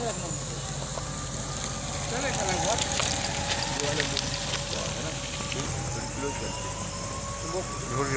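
Steady rushing noise of a large building fire with scattered crackles and pops, under faint voices of onlookers. A long tone slowly rises through the last few seconds.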